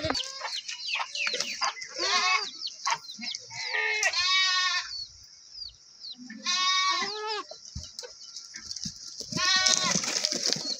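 Goats bleating: about four quavering calls, with light clicks and rustles in between.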